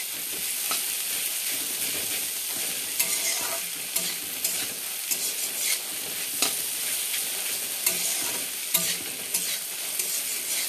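Shredded rupchand (pomfret) fish with onion and chilli sizzling as it dry-fries in a kadai. A spatula scrapes and knocks against the pan at an uneven pace every second or so.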